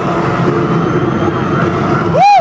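Live dubstep DJ set played loud over a festival sound system: a steady, dense wall of heavy bass, with crowd voices mixed in.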